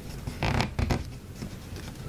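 A sheet of origami paper rustling and crinkling as hands fold and crease it, with a few sharp crackles between about half a second and one second in.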